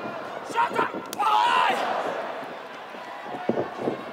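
Pro-wrestling arena ambience with a sharp smack about a second in, followed at once by a loud yell; a few dull thuds come near the end.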